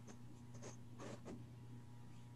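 Ink pen scratching on drawing paper in a few short, faint strokes, over a steady electrical hum.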